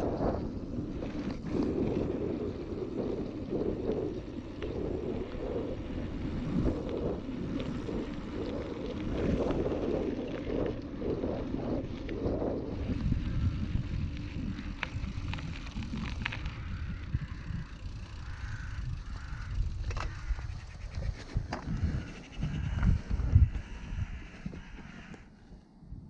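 Wind buffeting the microphone over the rumble of a mountain bike's tyres rolling along a dirt road, with a few louder knocks from the bike over bumps near the end.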